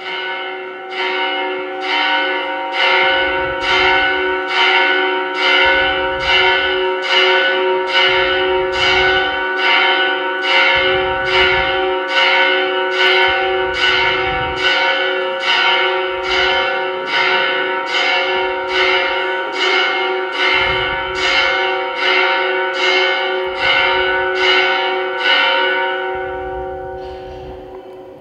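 Bells ringing in a steady run of strikes, nearly two a second, each note ringing on into the next, fading away just before the end.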